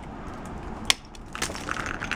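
An icicle being smashed and shattering: a sharp crack about a second in, then a clatter and crunch of breaking ice pieces.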